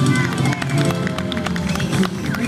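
A live pop-soul song with backing band ending about half a second in, followed by people's voices.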